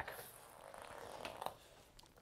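Quiet room tone with faint rustling of movement and two light ticks about a second and a half in.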